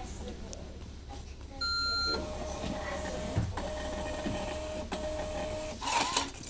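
Bus ticket machine taking a contactless card payment: a short electronic beep as the card is read, then the thermal ticket printer whirring for about three and a half seconds, with two brief breaks, as the ticket feeds out. A steady low hum of the idling bus engine runs underneath.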